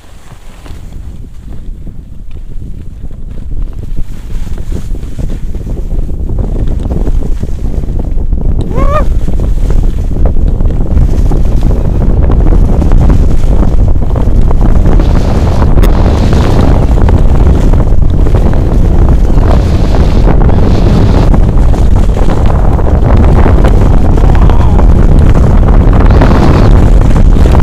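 Wind buffeting a handheld action camera's microphone as a skier picks up speed downhill, mixed with skis scraping over packed snow. It builds over the first ten seconds into a steady, loud rush.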